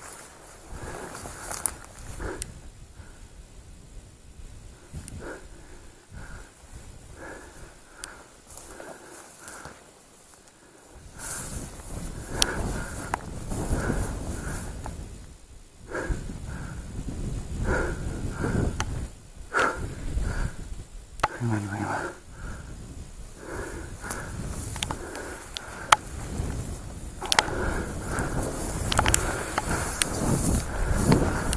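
Footsteps and the rustle of dry grass and brush against clothing as a person walks through a field, quiet at first and louder and busier from about a third of the way in.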